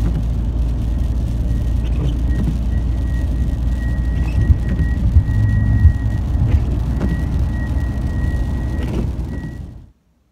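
Road and engine noise inside a car cruising at motorway speed: a steady low rumble, with a faint thin high tone that comes and goes from a couple of seconds in. The sound fades out just before the end.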